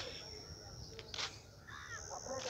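Crows cawing: a short harsh caw near the start and another about a second in, with more bird calls near the end. Under them runs a thin high-pitched steady note that stops for a moment midway.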